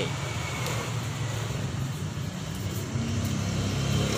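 A steady low engine hum, like a motor vehicle running nearby, over outdoor background noise.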